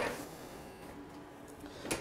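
Quiet handling of a ratchet strap on a wheeled table, with a short click at the start and another just before the end over low room tone.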